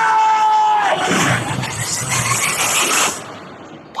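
Film trailer soundtrack: a man's long held shout that ends about a second in, then a loud rushing wash of sound effects and music that fades away near the end.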